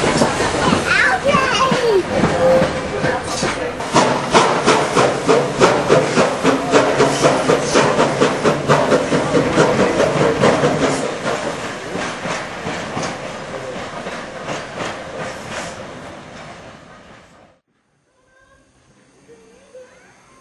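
Narrow-gauge steam train on the move, with a regular beat of about three strokes a second. The beat fades away and the sound cuts off abruptly near the end.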